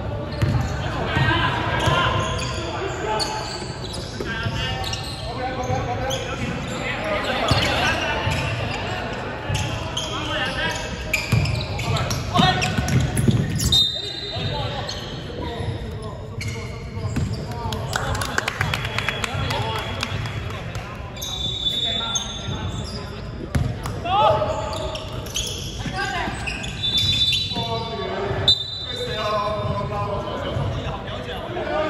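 Basketball bouncing and dribbling on a wooden gym floor, with players' voices calling out through the echo of a large sports hall. A few short high-pitched squeaks come through, a little past the middle and again near the end.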